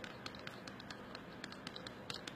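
Wooden stir stick stirring two-part casting resin in a clear plastic cup, giving faint, irregular light clicks and scrapes as it knocks against the cup.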